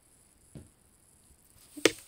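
Handling noise as the cross-stitch fabric and camera are moved: a faint soft thump about half a second in, then one sharp knock near the end.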